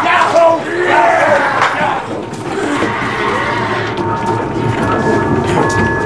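Several voices shouting and yelling over one another for the first two seconds or so, then a rougher stretch of scuffling commotion. Held, steady musical tones fade in near the end.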